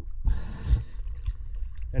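Sea water sloshing and splashing around a camera held at the sea surface, with a low rumble of waves and wind on the microphone; the loudest rush of splashing comes in the first second.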